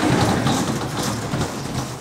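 Window roller shutter being raised, a steady rattling rumble of its slats rolling up.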